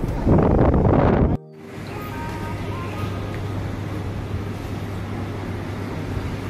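Loud road and wind noise inside a moving car's cabin that cuts off abruptly after about a second and a half. Then comes a quieter, steady ambience with a low hum and faint music.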